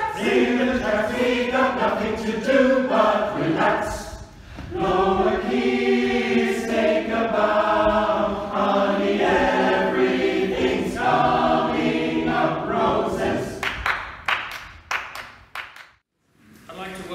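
A choir singing, with long held notes and a short break about four seconds in; the singing ends about three-quarters of the way through, followed by a few sharp clicks.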